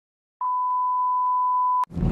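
Steady 1 kHz test-pattern reference tone, the beep that goes with TV colour bars, lasting about a second and a half. It starts shortly in and cuts off suddenly with a click.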